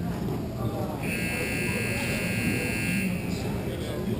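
Rink scoreboard buzzer sounding once, a steady, unwavering tone lasting about two seconds and starting about a second in, heard over the low echoing noise of the hall.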